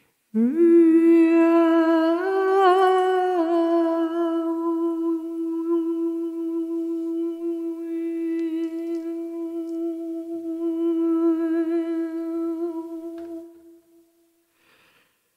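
A woman's voice holding one long hummed note of wordless chant. It slides up into the note at the start, lifts slightly for a moment about two seconds in, then holds steady until it fades out just before the end.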